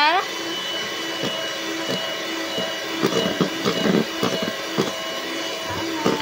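Electric hand mixer running steadily, its beaters whipping an ice cream mixture in a plastic basin until it turns fluffy.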